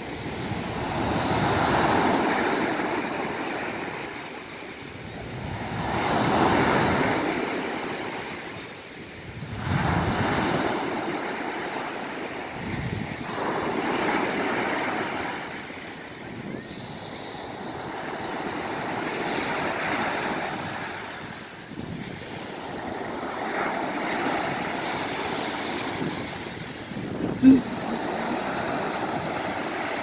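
Ocean surf breaking and washing up the beach, swelling and fading every few seconds, with wind buffeting the microphone. A single brief sharp sound stands out near the end.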